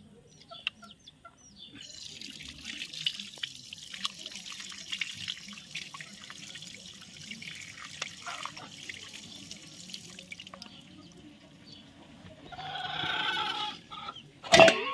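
Water running from an outdoor tap, splashing over cupped hands and onto the wet concrete as fish pieces are rinsed under it. Small birds chirp briefly before the water starts, and a louder, short sound comes near the end.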